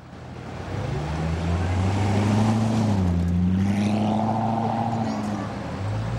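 A Corvette's V8 engine running at low revs as the car drives slowly past. The sound fades in over the first second, dips slightly in pitch about three seconds in, then holds steady.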